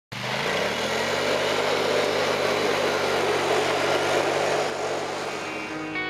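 Polaris Sportsman 850 XP ATV's twin-cylinder engine running as it is ridden, rising in pitch over the first second and then holding a steady note.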